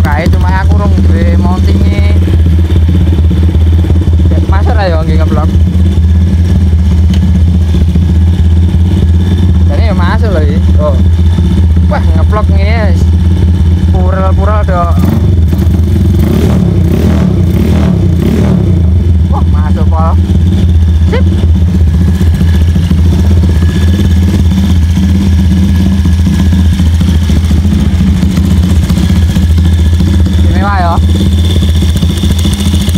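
Honda Tiger's single-cylinder four-stroke engine idling steadily through an aftermarket stainless exhaust, loud and even throughout.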